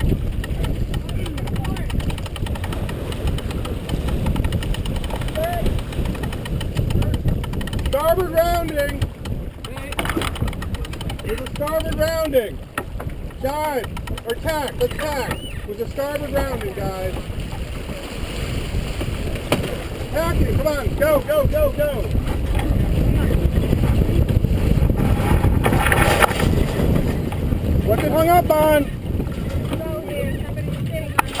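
Steady low rush of wind and water aboard a sailboat under way, heaviest in the second half, with crew voices breaking in now and then.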